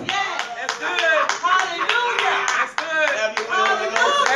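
Small congregation clapping irregularly, with several voices calling out over one another.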